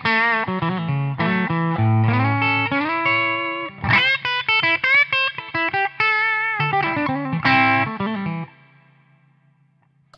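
Fender 50th Anniversary Deluxe Stratocaster electric guitar played through a Joyo Rated Boost, a clean boost with a little overdrive, with the pedal's high (treble) control turned down to cut the top end. A phrase of single notes and chords stops about eight and a half seconds in and rings out.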